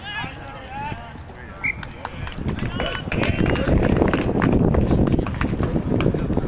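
Distant shouts across a sports field, then about two seconds in a loud, low rumbling noise over the microphone that stays to the end and buries everything else.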